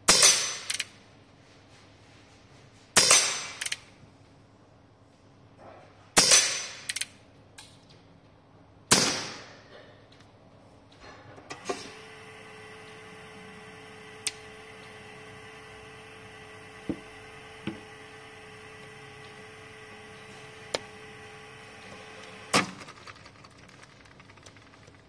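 Four shots from a CO2-powered Umarex Colt Peacemaker .177 pellet air revolver, about three seconds apart, each followed by a lighter click. After them, a steady motor hum with a few clicks as the range's electric target carrier runs the paper target back, ending with a sharp click.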